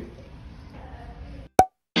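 Faint room noise that cuts out suddenly about a second and a half in, followed by one sharp pop in dead silence, the click of an abrupt edit splice.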